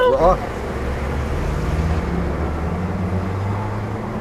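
Steady noise of a car driving along a city street: a low, even engine hum under road and traffic noise.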